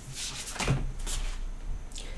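Tarot cards being handled: a few soft taps and slides as a card is drawn from the deck and laid on the table.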